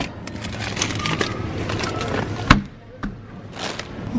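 Plastic bags of frozen fruit rustling and clicking as a hand rummages on a freezer shelf, with one sharp knock about two and a half seconds in.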